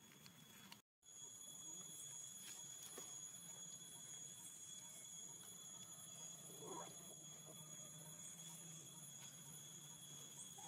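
Near silence: a faint steady high whine over a low hum, cut off briefly about a second in, with one faint short squeak about seven seconds in.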